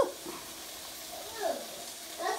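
Quiet kitchen background: a faint, even hiss, with a brief soft voice about a second and a half in.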